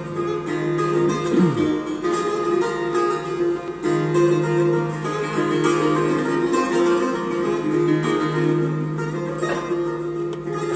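Solo long-necked lute, plucked, playing a slow traditional melody over sustained, ringing low notes, with a quick downward pitch slide about a second and a half in.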